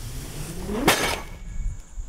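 A heavy cardboard box holding a portable garage kit is dragged across a pickup truck's ribbed bed liner. It makes a scrape that rises in pitch, then hits the ground with a loud thump about a second in.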